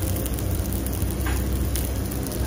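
Thick beef steaks sizzling on a hot lava-stone plate: a steady crackling hiss of fat and juices spitting, with one slightly louder spit about halfway through.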